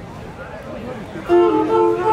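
Live string ensemble of violins, viola and cellos: the music drops to a brief lull with crowd voices heard faintly, then the strings come back in loudly with sustained notes just over a second in.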